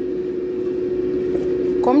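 Steady mechanical hum carrying one constant mid-pitched tone, with no speech until a word near the end.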